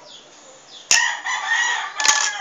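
A rooster crowing, starting suddenly with a sharp click about a second in and carrying on past the end.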